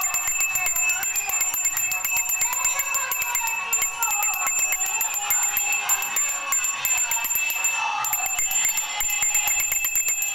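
A puja hand bell rung rapidly and without a break, over high-pitched devotional singing, as during an aarti.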